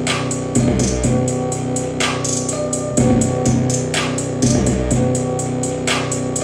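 A hard trap instrumental beat playing back: fast, even hi-hat ticks over deep held bass notes and a looped melodic sample that repeats about every two seconds.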